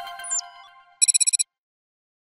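Short electronic audio-logo sting: ringing chime tones fading out with a quick downward glide, then, about a second in, a rapid burst of high beeping pulses that stops abruptly.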